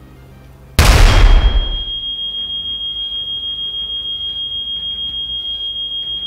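A sudden loud explosion about a second in, fading over a second, followed by a smoke alarm sounding a steady, high-pitched, evenly pulsing tone.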